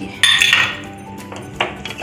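Steel kitchenware clanking: one sharp metallic clink with a brief ring about a quarter second in, then a lighter knock near the end.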